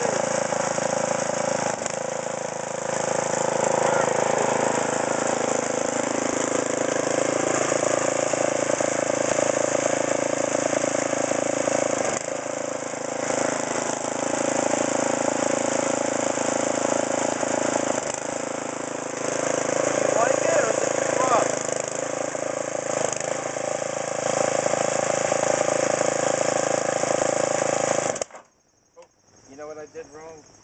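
The engine of a Husqvarna DRT900E rear-tine tiller runs steadily under load as the tines churn through sod. A little before the end it cuts out suddenly: the tiller stalls while in forward gear.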